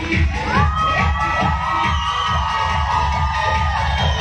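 Bollywood dance music with a steady bass beat, overlaid by a crowd cheering. Several voices come in one after another with long shouts that slide up in pitch and hold, from about half a second in until near the end.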